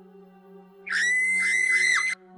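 A shrill, high-pitched scream held at one steady pitch for about a second, starting about a second in and cutting off abruptly, over soft background music.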